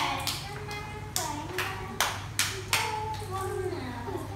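Hand claps: about eight sharp claps at an uneven pace, over faint children's voices.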